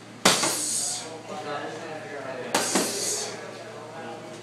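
Boxing gloves striking focus mitts: two sharp smacks about two seconds apart, each echoing briefly off hard walls.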